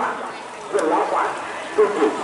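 Voices of an outdoor crowd, fainter than the commentary around them, with a short, louder call near the end.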